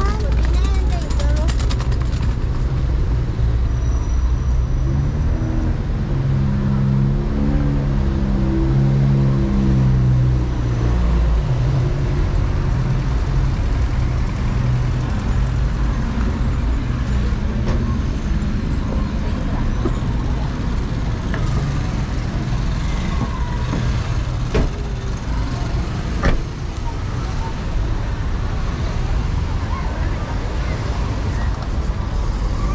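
City street traffic, with a passing vehicle's engine rising and then falling in pitch a few seconds in, over a steady low rumble and the voices of people on the sidewalk. Two short sharp knocks come near the end.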